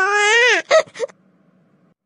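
Crying sound effect: one high-pitched wail about half a second long that rises and then falls in pitch, followed by two short sobs.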